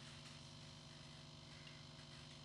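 Near silence: faint room tone with a steady low electrical hum.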